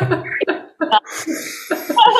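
People laughing over a video call, in short breathy bursts.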